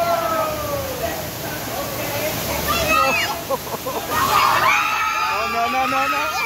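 Water rushing and splashing around a river rapids raft as it passes a waterfall, with riders' voices calling out over it; several voices at once from about four and a half seconds in.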